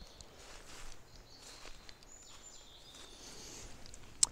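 Quiet woodland ambience with a few faint, distant bird calls.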